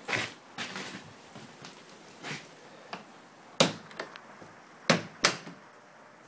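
Several sharp knocks and clicks over a faint background, the loudest three coming in the second half.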